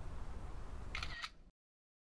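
Steady low ambient rumble with a short click and a brief high chirp about a second in, then the sound cuts off abruptly to total silence.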